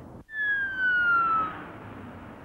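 An electronic tone, starting just after a cut, gliding steadily downward in pitch for about a second, followed by a steady hiss.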